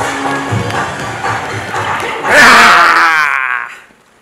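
Upbeat K-pop dance track with a steady beat, ending about two seconds in with a loud final burst of voices gliding up and down in pitch that fades out near the end.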